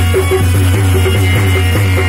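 Harmonium playing a stepping melody of held notes over a steady low hum, an instrumental passage between sung lines of a devotional bhajan.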